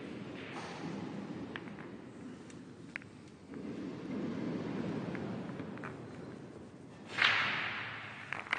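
Low rumbling noise, then about seven seconds in a sudden loud whoosh sound effect, as in a commercial's sound design.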